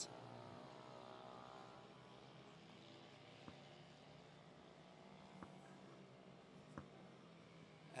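Faint sound of several 100 cc racing minibike engines running together, a steady blend of overlapping engine notes. A few soft clicks come through in the second half.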